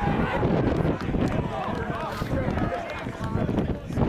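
Several people shouting and cheering at once as a goal is scored in an amateur football match.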